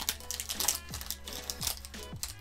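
Foil booster-pack wrapper crinkling and crackling in short bursts as it is torn open by hand, over background music with steady held tones.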